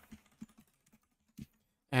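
A few faint keystrokes on a computer keyboard, about four separate taps with short gaps between them.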